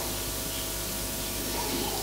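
Steady hiss with a faint low hum underneath, and no voice.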